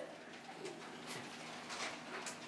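Quiet pig-barn room tone: a steady low hum with a few faint, short grunts and squeaks from piglets in the pens.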